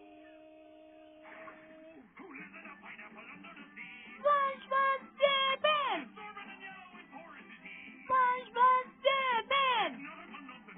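A song from a children's television programme playing through a television speaker: music with a singing voice. A held chord opens it, and after about two seconds the sung phrases begin, two of them ending in long downward slides, one about six seconds in and one at the end.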